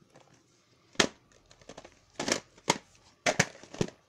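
Plastic VHS tapes and cases handled close to the microphone: a sharp knock about a second in, then a string of clacks and rustling over the last two seconds.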